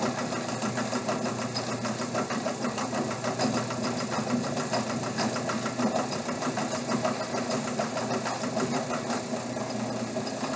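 Cumulative compound DC motor running steadily with no load at about 1800 RPM: a steady hum with a fast, fine ticking.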